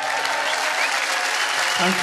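Audience applauding, with scattered cheers over the clapping.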